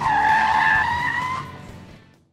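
Tyre-screech sound effect with the logo: a squeal that starts suddenly, edges slightly up in pitch and fades out over about two seconds.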